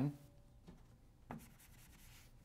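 Faint rubbing of a board eraser or chalk on a chalkboard, with two light knocks about two-thirds of a second and just over a second in.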